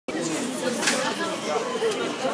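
Several people talking over one another: indistinct chatter of overlapping voices.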